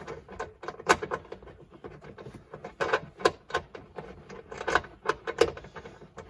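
Irregular clicks, knocks and rattles of hands handling a freshly unbolted seatbelt pretensioner and the plastic pillar trim around it, the sharpest knock about a second in.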